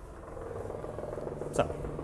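A low, steady mechanical drone with a fast, even pulse, slowly growing louder, with a man's single spoken word near the end.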